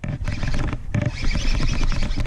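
Rumbling wind and handling noise on a head-mounted action camera's microphone while a hooked bass is reeled in on a baitcasting rod from a kayak.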